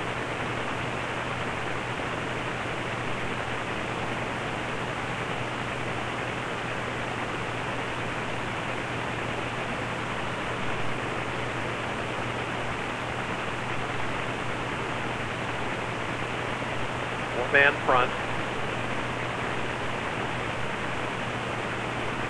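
Steady stadium background noise of a crowd at a football game, an even hiss with a low hum under it, and two brief shouts about three quarters of the way through.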